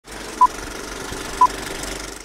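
Old-film countdown sound effect: a steady crackling film-projector run, with two short, loud high beeps about a second apart.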